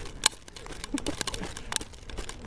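Wheels rolling fast over cracked parking-lot asphalt: a low rumble with irregular clicks and knocks as they run over the rough surface.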